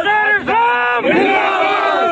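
A group of men shouting slogans together in a few loud, drawn-out calls.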